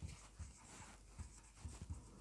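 Faint sound of a dry-erase marker writing on a whiteboard.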